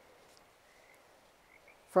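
Very faint background of a low hiss with a few soft, short high chirps from night-calling animals.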